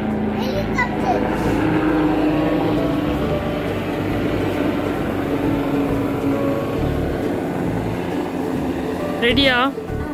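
Helicopter flying overhead: a steady drone of rotor and engine with low, even tones, easing off slightly near the end.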